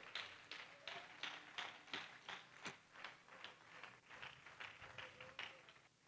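Faint, scattered handclaps from a congregation, irregular and thinning out after about three seconds.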